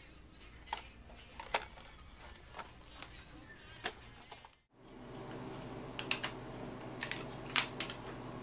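Scattered light clicks over a low hum, broken by a sudden drop to silence. Then a steady hum with clusters of sharp, crinkly clicks from a pregnancy-test wrapper being handled and opened.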